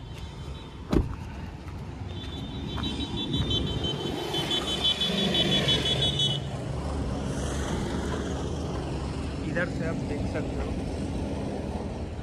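A car door shut with one sharp thud about a second in, then roadside traffic. Engines and lorries keep up a steady low rumble, and a passing vehicle swells to the loudest point around the middle. A high pulsing tone sounds for about four seconds over it.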